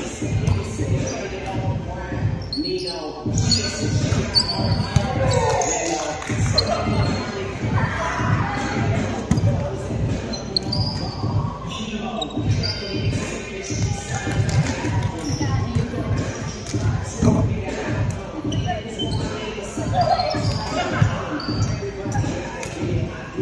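A ball bouncing on a hardwood gym floor, a steady run of low thumps, about three a second, echoing in a large sports hall, with players' voices over it.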